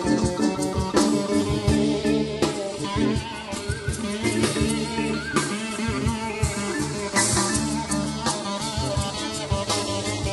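Blues-rock band playing live in an instrumental passage: guitar over a steady drum-kit beat, with no singing.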